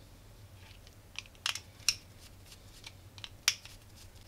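A small screwdriver working the screw terminals of a Bluetooth amplifier board, giving a string of light clicks and scrapes, the loudest about one and a half, two and three and a half seconds in.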